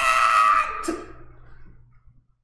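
A man's voice holding one long, high, drawn-out note into the microphone. It fades away after about a second and ends in silence.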